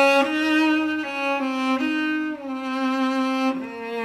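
Cello playing a slow melody, one bowed note at a time. Each note is held for about half a second to a second before the line moves on, with a slight waver in pitch.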